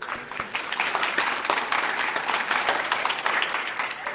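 Audience applauding: many hands clapping at a steady level that eases slightly near the end.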